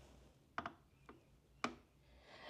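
A perfume bottle with a gold metal cap set down on a gold-framed glass tray: three light clicks about half a second apart, the last the sharpest.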